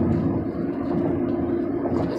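Steady road noise inside a car cruising at highway speed: tyre and engine hum with a constant drone.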